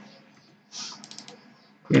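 Computer keyboard keys tapped in a quick run of several clicks about three-quarters of a second in, followed by a few fainter taps; a man's voice begins at the very end.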